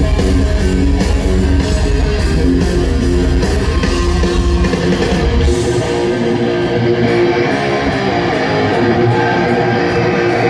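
Live heavy metal band playing an instrumental passage led by distorted electric guitars, with no vocals, picked up by a phone mic in the crowd. About halfway through, the deep bass and kick-drum rumble drops out, leaving the guitars ringing over cymbals.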